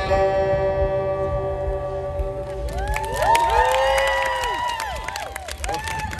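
The band's last chord rings out and fades, and about three seconds in an audience breaks into cheering, whoops and clapping at the end of the song.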